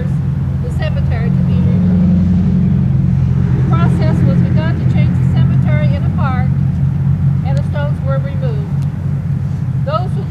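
A heavy motor vehicle's engine running close by, a loud, steady low rumble that swells about a second in and holds, with a voice heard over it at times.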